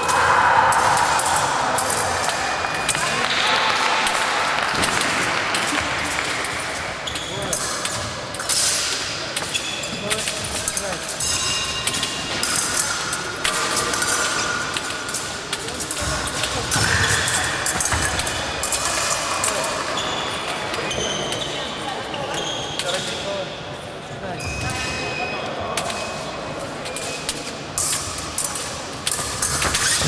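Fencing bout: fencers' feet thudding and stamping on the piste, with sharp clicks and clinks of blades, over voices in a large echoing hall.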